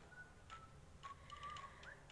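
Near silence: room tone with a few faint ticks and faint thin tones.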